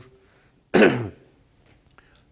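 A man clearing his throat once, a short, loud rasp that falls in pitch, in a pause between his sentences.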